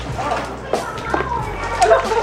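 Girls' brief vocal sounds and murmurs, not full words, over a steady low hum, with a few light clicks.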